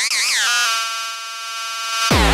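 Electronic dance remix breakdown with the bass and beat cut out: a high synth lead sweeping up and down in pitch like a siren, then settling into one held synth chord.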